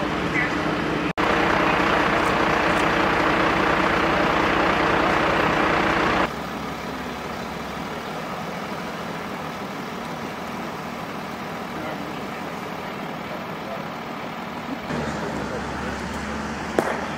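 Motor vehicle engines idling: a steady hum with a held tone, loud and close for the first several seconds, then dropping abruptly about six seconds in to a quieter, more distant hum, with faint voices.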